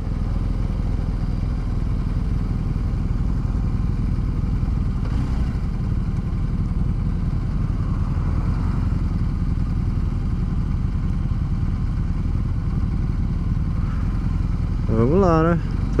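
BMW R1250 GS Adventure's boxer twin running at low road speed, a steady low rumble heard from the rider's seat. A man's voice comes in near the end.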